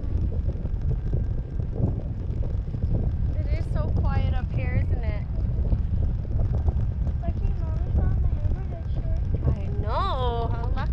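Wind buffeting the microphone in a steady low rumble, high up on a parasail. High-pitched voices call out briefly about four seconds in, and faintly again later.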